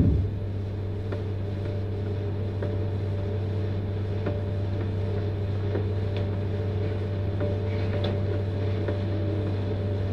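Steady low electrical hum with background hiss from a talk recording, between the speaker's words, with a few faint scattered clicks. A short low sound comes at the very start.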